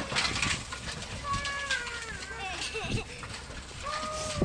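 People's voices calling out, with a few sharp knocks.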